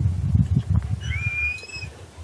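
A dog yawning, ending in a single high squeaky whine about a second in that rises and then holds for nearly a second. Low muffled rumbling comes before it.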